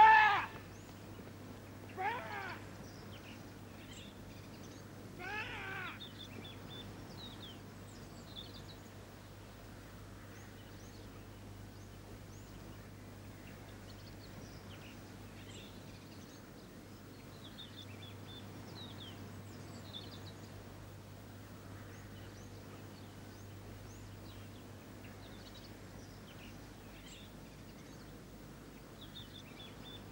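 Outdoor birdsong: many faint, short chirps and twitters over a quiet background. Before that, in the first six seconds, come three louder wavering calls, the first the loudest.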